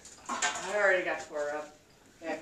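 Indistinct voice speaking a few short phrases in a small room, about half a second to a second and a half in.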